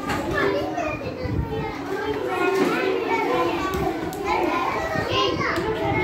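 A room of young children chattering and calling out at once, many small voices overlapping with no one voice standing out.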